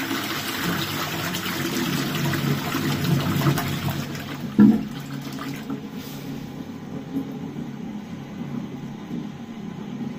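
Twyford Advent toilet flushing: water rushes loudly into the bowl, with a short louder surge about four and a half seconds in as the bowl empties. After that the water runs on more quietly and steadily.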